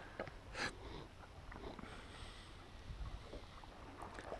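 Faint water swishing along a sailing yacht's hull as it moves under sail in light wind, with a low rumble and a few soft ticks. There is a short hiss about half a second in.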